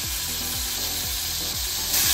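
Butter sizzling in a hot frying pan, a steady hiss.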